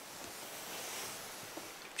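Quiet room ambience: a steady faint hiss with no distinct sound standing out.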